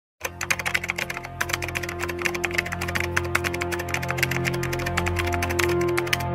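Typing sound effect: rapid computer-keyboard key clicks, many per second, over a bed of steady sustained music tones.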